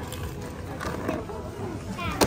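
Indistinct voices in a busy shop, with a child's voice gliding up and down in pitch about halfway through.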